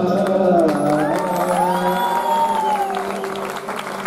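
Closing bars of a Hindi film song in raga Malkauns performed live, ending on a long held, gliding note over a steady low drone, as the audience breaks into applause.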